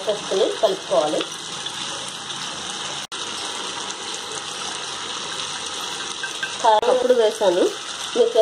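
Tomato chutney sizzling steadily in a pan on a gas stove, with a voice speaking briefly at the start and again near the end.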